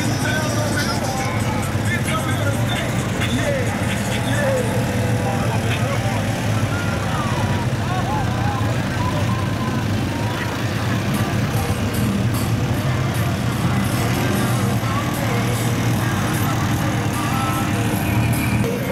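Side-by-side utility vehicles and ATVs running at low speed as they roll past, a steady low engine drone, with indistinct voices over it.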